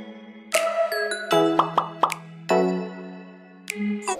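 Light background music for a channel intro: a melody of short notes, each starting sharply, several in quick succession through the middle.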